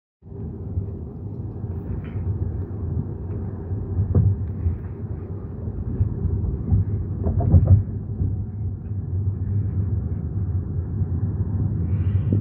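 Steady low road-and-tyre rumble inside a moving car's cabin, with a couple of short knocks about four and seven seconds in.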